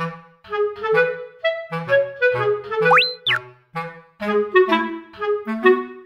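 Background music: a bouncy tune of short woodwind notes over a bass line, with a whistle-like glide up and back down about halfway through.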